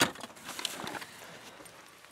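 A sharp knock, then faint rustling and a few small knocks fading away: someone moving about and handling things in a car's front seat.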